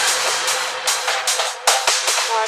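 Hard acid techno in a breakdown: the kick drum has dropped out, leaving a held synth tone, a synth line and short high percussive hits.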